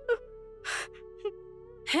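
A woman's single sharp, sobbing intake of breath a little under a second in, over a soft, steady held note of background music.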